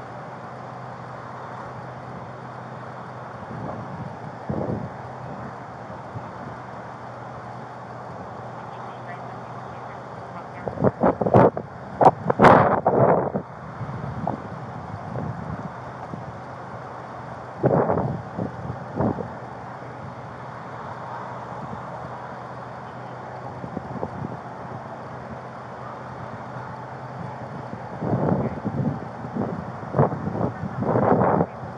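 Steady street noise with wind on a body-worn camera's microphone, broken by short bursts of indistinct voices, the loudest about a third of the way in, another just past halfway and more near the end.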